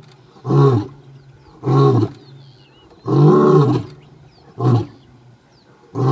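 Male African lion roaring in a bout of four deep calls about a second apart, the third the longest.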